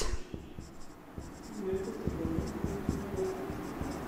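Marker pen writing on a whiteboard: a run of short strokes as a word is written out, starting about a second in.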